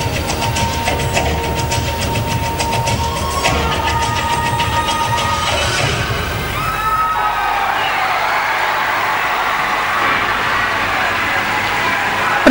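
Recorded accompaniment music for a rhythmic gymnastics ball routine, with a steady beat, stops about halfway through. An arena crowd then breaks into applause and cheering, with a few whistles.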